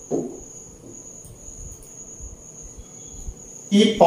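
A steady high-pitched tone runs through a quiet pause over faint room noise, with a man's voice coming back near the end.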